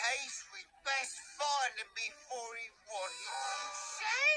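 A cartoon character's voice, electronically altered in pitch so that its drawn-out, swooping syllables sound almost sung, about two a second with one long held note near the end.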